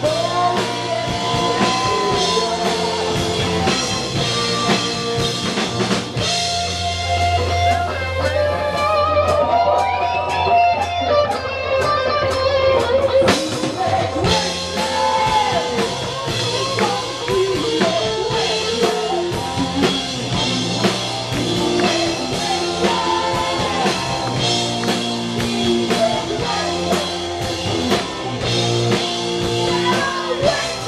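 Live rock band playing: electric guitar, keyboard and drum kit, with melodic lead lines that bend and slide in pitch over a steady bass and beat.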